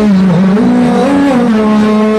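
Male voice humming into a microphone: one long held note that rises slowly for about a second, falls back, dips and settles again. It is the wordless vocal drone that carries the melody of a qasida sung without instruments.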